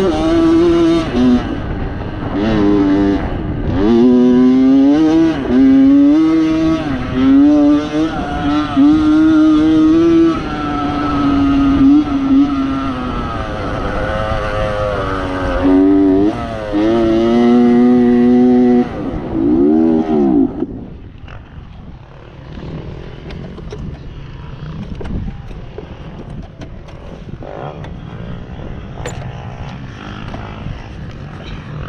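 Honda CR85 two-stroke dirt-bike engine revving up and down hard under load, then about two-thirds through its pitch falls away and the engine note stops, leaving only a low rushing noise as the bike coasts. The engine has quit mid-ride, which the title puts down to blowing the engine up.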